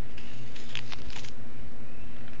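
Small plastic baggies of glitter being handled and set down among other bags, crinkling in a quick cluster in the first half, over a steady low hum.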